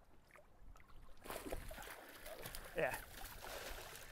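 Water splashing and sloshing around a landing net holding a northern pike at the side of a boat, starting about a second in and going on steadily.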